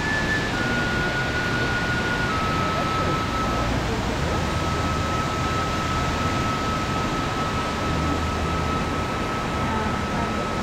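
Steady rushing roar of a partly frozen waterfall, with water still pouring down over the ice. A thin, steady high tone runs through it and shifts in pitch a few times.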